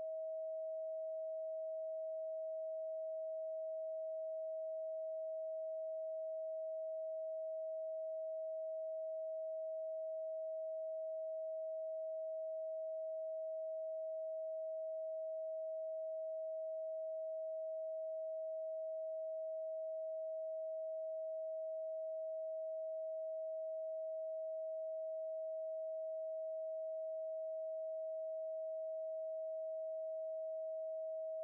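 A steady 639 Hz pure sine tone: one unbroken note at an even level.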